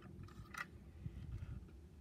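Quiet handling of a diecast model car held in the hands, with one faint tick a little over half a second in.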